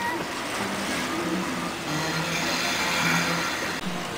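Steady rush of water running down a pool water slide and splashing into the pool, a little louder in the second half.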